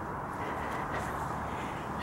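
Distant road traffic: a steady, even hum of cars.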